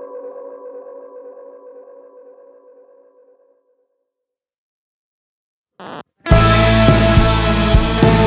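A rock song ends on a sustained, wavering chord that fades away over about three seconds, followed by a couple of seconds of silence. After a brief sound, the next song starts about six seconds in, with the full band of drums, bass and guitars coming in loud.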